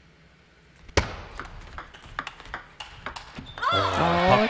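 Table tennis rally: a short hush, then from about a second in a quick run of sharp clicks as the celluloid-type ball is struck by the rackets and bounces on the table. A commentator's voice comes in near the end.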